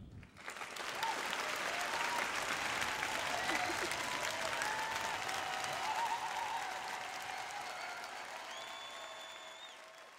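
Audience applause at the close of a speech, starting just after the start, full through the middle, then fading away toward the end, with a few voices calling out over it.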